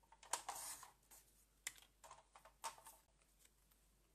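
Paper rustling and tapping as die-cut paper pieces are sorted and picked out of a pack: a handful of short, quiet rustles and taps, the sharpest about a third of a second in.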